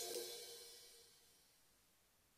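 The last chord of the background music, with a cymbal wash, ringing out and fading away to near silence over about a second and a half.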